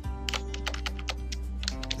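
Computer keyboard typing: a run of quick, irregular keystrokes, about eight to ten in two seconds, over steady background music.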